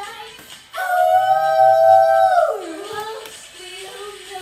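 Pop song playing, with one long, loud howl-like held vocal note starting just under a second in and sliding down in pitch as it fades about two and a half seconds in.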